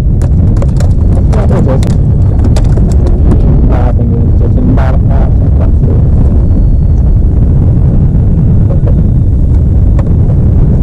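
Loud, steady low rumble of wind buffeting an open microphone, with scattered short clicks and knocks.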